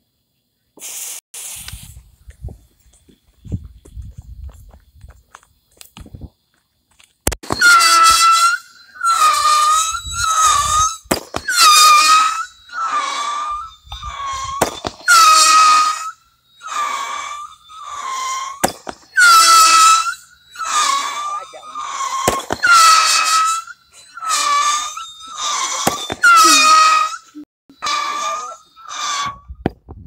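A fireworks cake firing a volley of whistling shots: some twenty shrill whistles, one after another, each half a second to a second long and often opening with a sharp pop. A brief hiss comes about a second in, before the first whistle.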